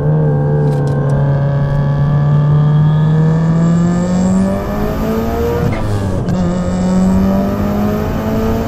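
Turbocharged 2.2-litre stroker Subaru flat-four engine of a 1999 Impreza GC8, breathing through equal-length stainless headers and a 76 mm exhaust, pulling hard under acceleration with a deep note, heard from inside the cabin. Its pitch climbs steadily, eases and dips about halfway through, then climbs again.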